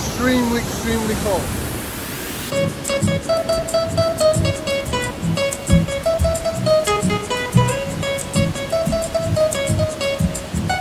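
Waterfall rushing steadily with a brief voice. From about two and a half seconds in, background music of plucked string notes over a steady beat takes over and is the loudest sound.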